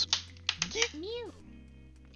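A few light clicks of plastic dice being handled, then a single meow that rises and falls in pitch, over faint background music.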